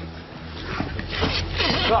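A man sniffing rapidly and repeatedly, imitating a dog greeting by sniffing another man's rear, the sniffs growing louder from about half a second in over a low steady music drone.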